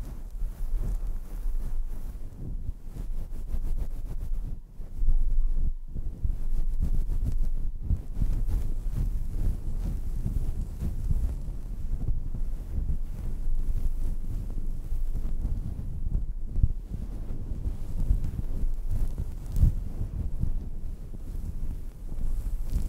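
Fingertips rubbing, scratching and kneading a furry microphone windscreen right on the mic: a dense, low, rumbling rustle that runs on with a couple of brief dips.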